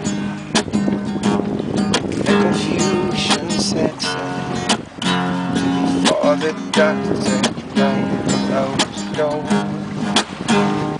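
Acoustic guitar strummed in a steady rhythm, with a man singing along.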